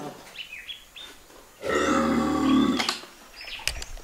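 A farm animal calls once, a pitched call lasting a little over a second that is the loudest sound here. A few high bird chirps come before it, and a couple of short knocks follow near the end.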